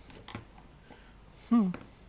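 A few light clicks and taps as plastic-handled Wiha screwdrivers are picked up and knocked against one another on a workbench, followed by a short hummed "hmm" a little past the middle, which is the loudest sound.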